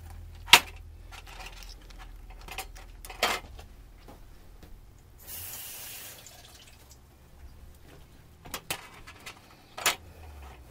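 Lobster tails being cut and pried open with kitchen shears and a knife on a metal sheet pan: a handful of sharp clicks and clacks of the tools on the pan and shell, the loudest about half a second in. A brief hiss comes a little after five seconds in.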